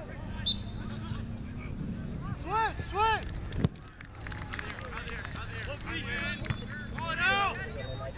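Shouts and calls from players and spectators at a youth soccer match, with wind on the microphone. A single sharp thud of the ball being kicked comes about three and a half seconds in.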